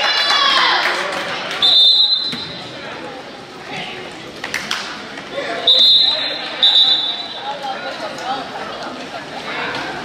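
Indoor basketball game sounds: the ball bouncing on the court, sneakers squeaking sharply on the floor about three times, and spectators' voices and shouts echoing in a large gym.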